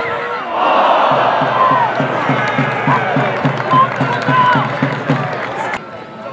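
Football crowd at a non-league match roaring and cheering as an attack nears goal, with a steady rhythmic beat of about four pulses a second underneath. The roar swells about half a second in and cuts off suddenly just before the end.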